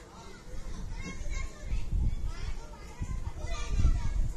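Faint voices in the background, children's among them, with low rumbling thuds that grow stronger from about a second in.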